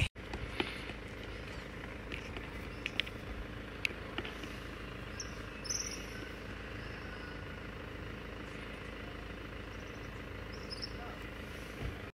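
Outdoor ambience: a steady low background rumble with a few faint high chirps and scattered light clicks.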